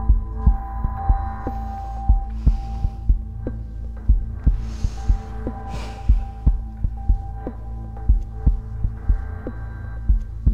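Suspense underscore: a low pulse beats about twice a second under steady held tones.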